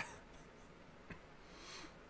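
Near-silent room tone, with a faint click about a second in and a brief soft rustle near the end.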